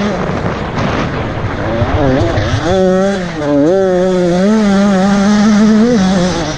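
Off-road motorcycle engine, heard from the rider's helmet, pulling under throttle. The revs drop about two seconds in as the rider backs off, pick up again, dip briefly, then hold high toward the end.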